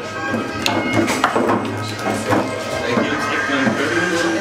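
Background music, with a table football game being played over it: several sharp clacks of the ball and the rod players striking.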